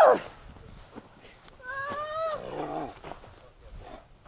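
A person's high, drawn-out cry about a second and a half in, falling in pitch and ending in a low, rough grunt.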